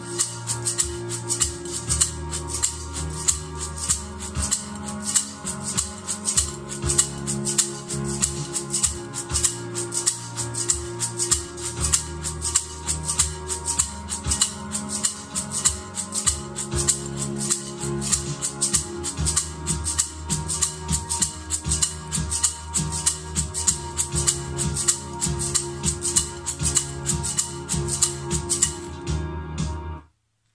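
Homemade shaker made from a small lidded metal tin half-filled with dried rice, shaken in a steady, even rhythm: a bright rattle of grains hitting the metal. Backing music with low sustained notes plays underneath, and the shaking stops just before the end.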